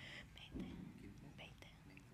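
Faint, hushed speech spoken away from the microphones, barely above the quiet of the room.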